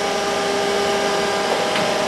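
Schaefer Technologies LF-10 capsule filling machine running: a steady whir and rush of air with several constant humming tones, growing slightly louder.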